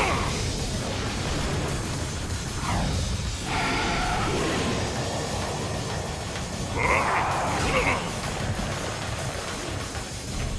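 Cartoon action soundtrack: background music mixed with sound effects of a robot truck's jet thruster and a mech dinosaur, with a falling sweep about three seconds in and a louder burst of effects around seven seconds in.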